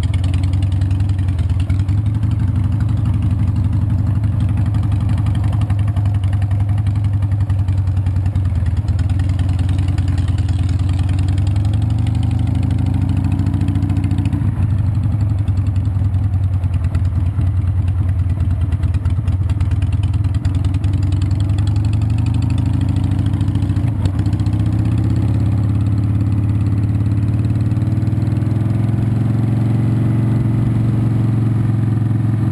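Cruiser motorcycle engine heard from on board while riding. Its pitch climbs as the bike speeds up, drops at a gear change about 14 seconds in, and climbs again from about 22 seconds.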